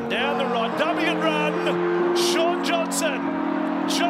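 Music with sustained chords and a voice over it.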